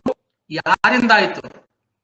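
Only speech: a person says one short phrase about a second long through a video-call connection, with dead silence before and after it.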